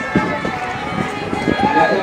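Street crowd noise with voices talking and several dull low thumps scattered through it.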